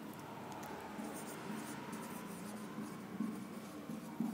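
Marker pen writing on a whiteboard: faint scratching strokes of handwriting.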